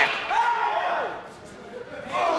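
A man's voice: one drawn-out call or shout lasting well under a second, fading away soon after.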